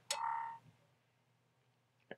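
Short macOS Finder system sound as an application is dropped into the Applications folder: a click and a brief pitched electronic tone that fades away within about half a second.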